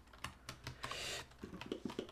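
Computer keyboard keys clicking in an irregular series as shortcut keys are pressed, with a short hiss about a second in.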